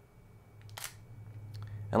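A Sony a6000 mirrorless camera's shutter firing once as a flash photo is taken: a single short, sharp click a little under a second in.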